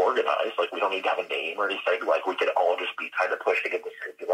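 Speech only: a person talking without pause, with the thin, narrow sound of a phone or remote call line.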